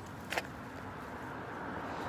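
Steady low outdoor rumble with one short sharp sound about a third of a second in.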